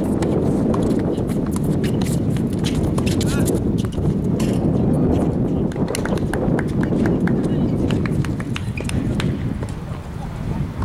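Wind buffeting the microphone, with a run of sharp clicks and knocks from tennis play on a hard court: racket strikes, ball bounces and footsteps, thinning out after about eight seconds.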